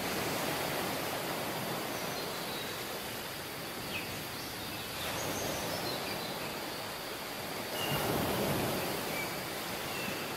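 Ocean surf washing up a sand beach, a steady rushing noise that swells about halfway through and again, more strongly, near the end.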